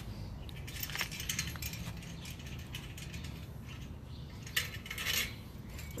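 Metal clicks and rattles from a black steel folding bike cargo trailer being tilted up and handled: a few scattered clicks about a second in, then a short clattering cluster near the end.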